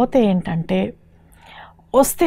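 A woman speaking, with a short pause about halfway through.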